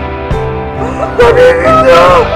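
Background music with held notes and a regular low beat. From about a second in, a louder voice sings over it in long notes that glide up and down.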